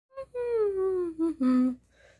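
A person's voice humming a short falling tune: a brief note, one long note that slides down in pitch, then two short lower notes.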